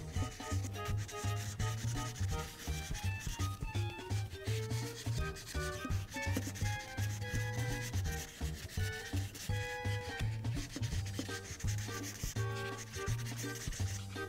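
Prismacolor marker nib rubbing on paper in continual quick back-and-forth strokes, filling in a large area, with light background music.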